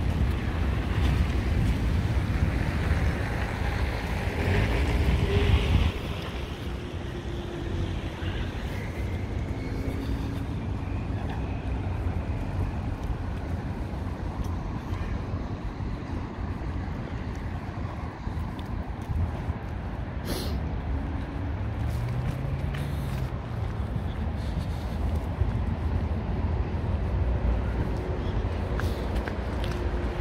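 Street ambience: a steady low rumble of road traffic, louder for the first six seconds, with a passing vehicle's pitch swelling and falling briefly past the middle.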